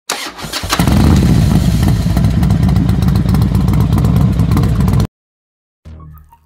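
Motorcycle engine being started: a brief rough crank, then it catches under a second in and runs loudly with fast firing pulses. It cuts off abruptly about five seconds in.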